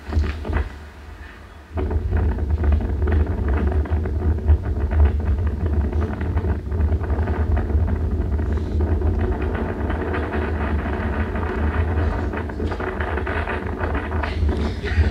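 Wind buffeting a camera microphone high up on an exposed balcony: a heavy, steady low rumble that starts abruptly about two seconds in.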